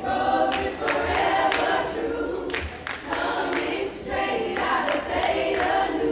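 A group of women singing a cappella together in parts, with a steady beat of sharp claps or stomps about twice a second.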